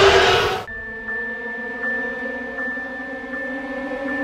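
The Predator alien's roar, a loud, rough film creature sound that cuts off about a second in. Soft, steady trailer music follows, with a held high note.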